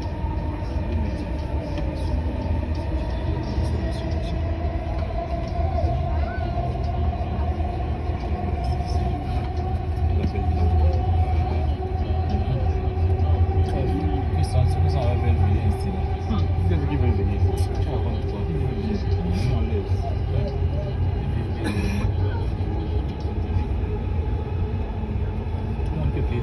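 Dubai Metro train running, heard from inside the carriage: a steady low rumble with a motor whine that dips in pitch over the first few seconds, then slowly rises.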